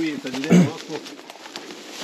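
A short, close vocal sound from a man, a brief hum or grunt that bends in pitch and peaks about half a second in, followed by faint crunching steps through dry grass and brush.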